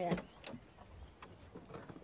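Low background ambience in a pause between lines of dialogue, with a few faint light clicks and faint high squeaks near the end.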